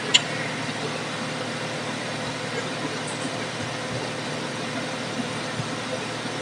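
Steady background noise with a faint constant hum, and one sharp click just after the start.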